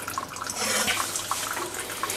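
A cleaver scrapes chopped spring onions off a wooden chopping board into a glass bowl, with a few light taps, over a steady hiss.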